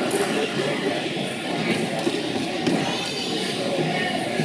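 Indistinct background chatter of many people in a large, echoing indoor hall, steady throughout.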